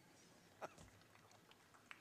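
Near silence in the hall: faint room tone with two soft clicks, a little over a second apart.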